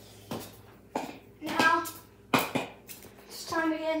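Children's voices talking in short, indistinct snatches, with a few sharp knocks in between.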